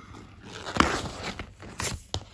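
Oracle cards being spread out and handled on a bed cover, soft sliding and rustling with two sharp card taps, one just under a second in and one near the end.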